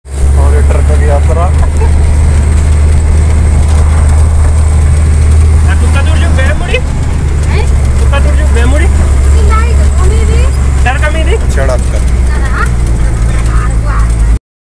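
Engine of a heavy road vehicle running with a loud, steady low drone, heard from inside the driver's cab, its pitch dropping slightly about six and a half seconds in. Indistinct voices of people talking sound faintly under the engine, with a faint steady high whine.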